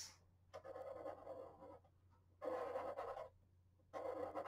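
Felt-tip marker drawing on paper: two strokes of about a second each, with a pause between.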